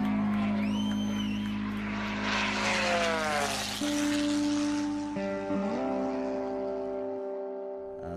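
Background music of slow, held chords, with a propeller airplane passing by in the middle: a rushing engine sound between about two and four seconds in, its pitch dropping as it goes past.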